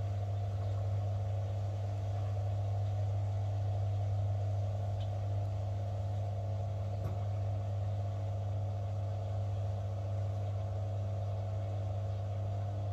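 Beko Aquatech front-loading washing machine running, its drum spinning with a steady, even hum.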